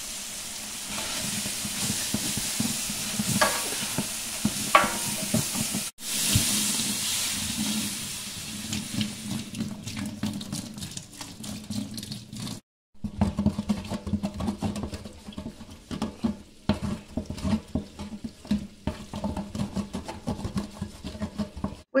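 A long spoon stirring and scraping onions, bell pepper and garlic that sizzle in rendered chicken fat in a large stainless-steel stockpot over a high flame. Later, with vegetable broth added to the pot, the spoon scrapes loose spices that had stuck to the bottom, in many quick sharp scrapes. The sound breaks off briefly twice.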